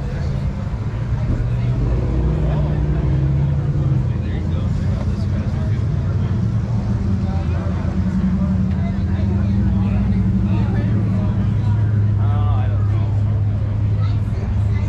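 A car engine idling close by: a steady low hum that shifts slightly in pitch a few times, with crowd chatter underneath.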